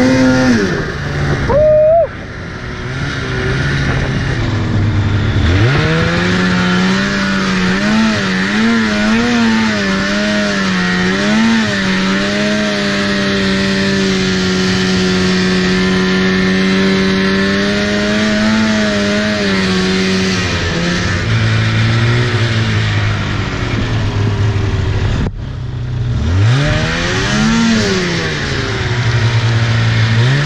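Two-stroke twin engine of a 2004 Polaris RMK 800 snowmobile revving as it is ridden through powder. The throttle is chopped sharply about 2 s in, then the revs climb with a few blips and hold one steady high pitch for several seconds, drop back about two-thirds of the way through, cut out for an instant, and rise and fall again near the end.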